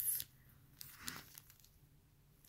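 Handling noise: a plastic sticker package crinkling in the hands, in two short rustles, one right at the start and a softer one about a second in.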